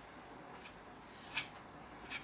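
Faint scraping of a metal putty knife spreading and smoothing filler over a patched hole in a wall, in a few short strokes, with a sharper scrape about a second and a half in.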